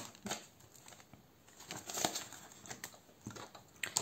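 Soft, scattered rustling and crinkling of a paper banknote and a clear plastic binder pocket as a 50-złoty note is slipped into the pocket.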